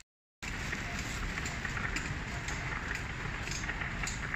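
A handheld camera being carried while walking through a shop: steady rumbling handling noise with faint scattered clicks and a low murmur behind. It starts abruptly after a half-second dropout.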